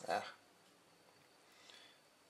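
A man's short "ah" at the start, then quiet room tone with a faint small tick near the end.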